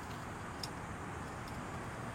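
Steady outdoor background noise, a low rumble under an even hiss, with one faint click a little over half a second in.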